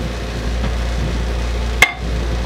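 Wooden workpiece being handled on a table-saw sled, with one sharp knock of wood on wood near the end, over a low rumble.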